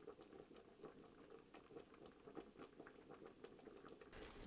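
Faint, irregular light ticking and crackling of dry manila fibre being handled and pulled through the stitches of a coiled basket.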